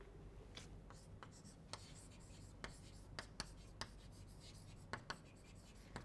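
Chalk writing on a blackboard: faint, irregular taps and short scratches as a word is written out.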